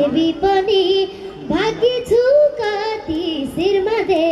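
A young girl singing a Nepali dohori folk melody into a microphone, amplified through the stage PA. Her voice wavers and ornaments each held note.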